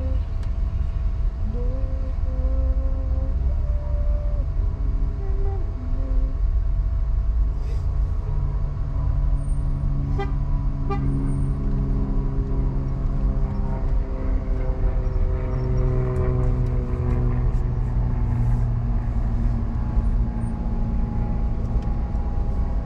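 Inside a moving car: a steady low engine and road rumble, with drawn-out tones over it that step in pitch in the first few seconds and later slide slowly up and down.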